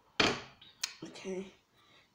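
Handling sounds from the basil plant and scissors: a short rustling burst, then a single sharp click.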